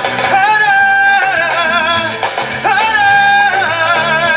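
Latin music performed live by a band, with a singer holding two long notes of about a second each.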